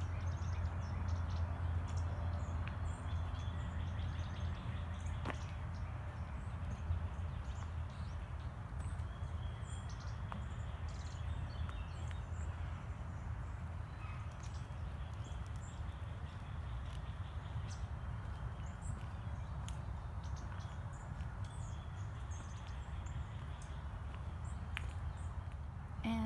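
Songbirds chirping and calling in short scattered notes over a steady low rumble, with a few light clicks.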